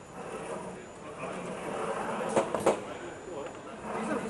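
Indistinct chatter of people standing around the pitch, with two sharp knocks in quick succession just past halfway.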